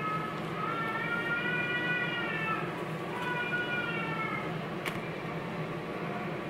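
A baby crying, fairly quiet: two long drawn-out wails, the first arching over about two seconds, the second shorter and falling away. A single sharp click comes near the end.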